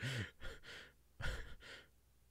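A man laughing quietly in three breathy puffs of exhaled air, the first with a short falling voiced note.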